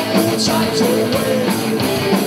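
Live rock band playing: electric guitars over a drum kit keeping a steady beat, an instrumental stretch with no singing.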